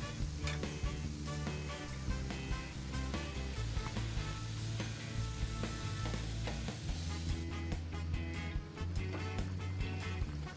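Background music with held low notes, over the steady sizzle of hot oil deep-frying wheat-flour coconut biscuits in a kadhai. The sizzle thins out for a moment about three-quarters of the way through.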